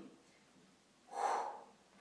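A woman's single audible breath about a second in, lasting about half a second, taken during a side-lying leg-lift exercise. The rest is near silence.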